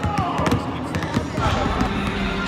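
Several basketballs bouncing on a hardwood court, irregular overlapping thuds, with voices calling out over them.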